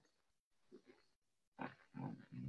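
Near silence on a video call line, broken near the end by a short, faint sound of a person's voice, like a murmur or soft laugh.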